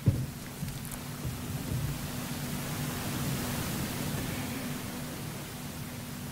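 Room tone through a lectern microphone and PA: a steady hiss with a low electrical hum, and one brief knock at the very start.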